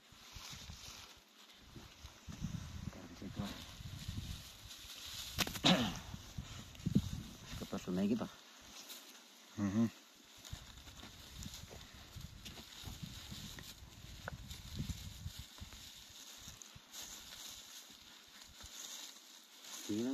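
Faint low voices and the soft rustle of a bundle of dry straw being handled and tied with ribbon, with a sharp click about five seconds in.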